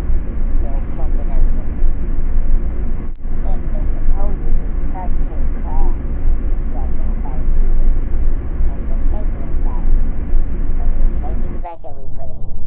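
A loud, steady rumbling noise with indistinct voices beneath it, broken by a brief dropout about three seconds in.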